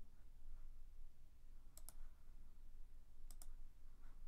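Computer mouse button clicks, faint: two pairs of quick clicks about a second and a half apart, over a low steady hum.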